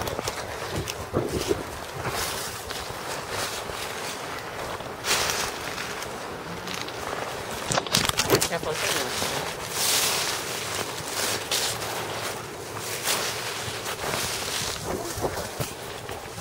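Footsteps in dry leaf litter and twigs, an irregular run of rustles and crunches, with bumps and rubbing from the handheld camera.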